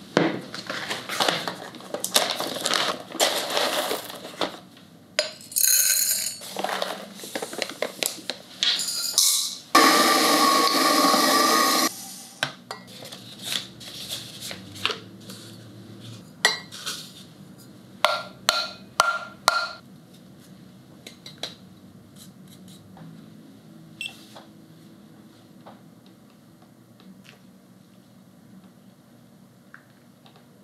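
Ceramic and glass pour-over coffee gear being handled and set down: irregular clinks and knocks, with a loud two-second rush of noise about ten seconds in and a few short ringing clinks near twenty seconds. The sounds grow quieter after that.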